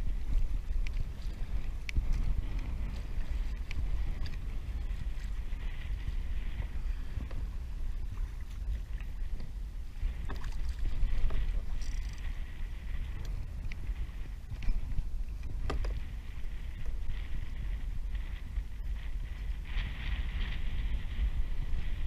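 Wind buffeting the camera microphone over water lapping against a plastic kayak hull, with a few short knocks.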